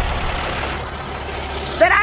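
Semi truck's diesel engine idling, a steady low rumble.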